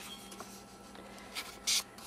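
Faint handling of an open book's paper pages: a small tick, a light scuff, then a brief rustle of paper near the end.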